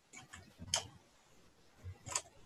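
Faint clicks of a computer mouse being operated, about four spaced apart, the loudest about three-quarters of a second in.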